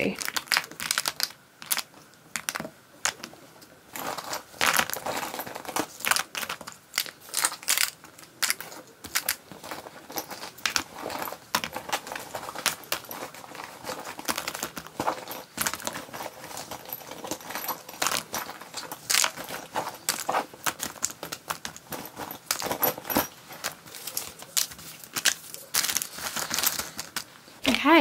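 Small plastic and glass nail-art pots and bottles being handled and packed into a fabric kit bag: many irregular light clicks, knocks and rustles, with some crinkling of plastic and paper.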